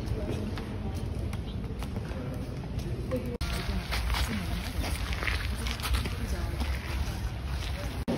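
Wind rumbling on a phone microphone, with the indistinct voices of people around it. The background changes abruptly about three and a half seconds in.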